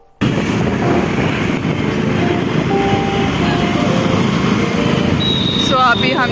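Wind noise on the microphone and street traffic heard from a moving scooter, a dense steady hiss that cuts in just after the start, with a voice beginning near the end.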